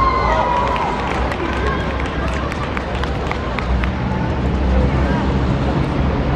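Children's voices shouting on an outdoor football pitch as a goal goes in, the loudest shouts in the first half second, with scattered short knocks and a steady low rumble of background traffic underneath.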